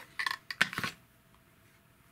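BS Diver Tortuga diving knife drawn out of its hard plastic sheath after the grey release button is pressed. A quick series of clicks and a scrape of the steel blade against the plastic comes in the first second, then it goes quiet.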